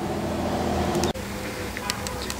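Steady hum of a running motor with a few held low tones, broken by a brief dropout about a second in.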